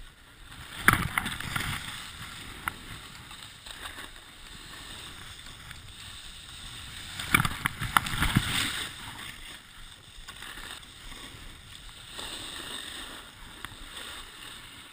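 Snowboard sliding over packed snow: a steady hiss of the base and edges on the snow, with louder scraping surges about a second in and again around seven to eight seconds, and wind noise on the camera microphone.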